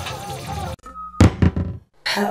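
Music cuts off suddenly under a second in. A brief steady tone follows, then two heavy knocks about a third of a second apart, the opening hits of a production logo sting.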